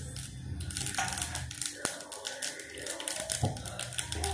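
Hot oil crackling in a small pan on a gas burner, with fast, irregular pops and clicks that grow denser after about a second, over a low steady hum.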